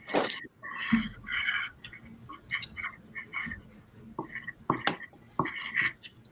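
Quiet, scattered short sounds carried over a video call: a few faint, brief voice-like murmurs and several sharp little clicks, with no sustained talk.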